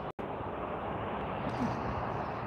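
Steady hum of road traffic on the streets below, with a brief cut-out in the audio just after the start.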